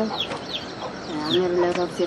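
Birds calling in the background: short, quick falling chirps several times, over an elderly woman's voice.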